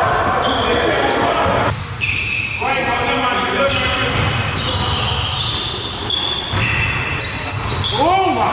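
Basketball being dribbled on a hardwood gym floor during a game, with players' voices, all echoing in a large hall.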